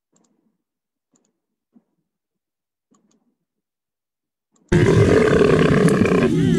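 A few faint, widely spaced clicks in near silence, then near the end a loud, rushing noise cuts in suddenly: the soundtrack of an outdoor field video starting to play.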